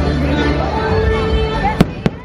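Fireworks show soundtrack music with a voice over it, and a single sharp firework bang near the end.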